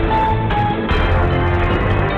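News-bulletin theme music: a loud orchestral-electronic sting with held synth tones over a pulsing bass beat.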